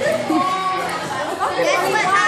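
Chatter of a group of teenagers talking over one another, with higher-pitched voices rising near the end.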